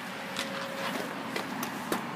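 Footsteps and handling of the camera-phone as the person moves and crouches: a few light, irregular taps over a steady background hiss.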